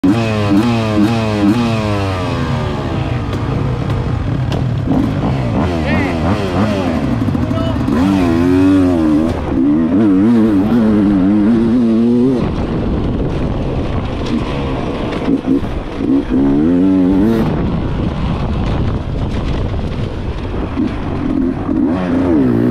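Enduro motorcycle engine revving and accelerating on a dirt track, its pitch rising and falling again and again with throttle and gear changes.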